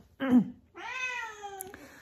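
Domestic cat meowing: a short, loud meow, then a longer drawn-out meow that sinks slowly in pitch.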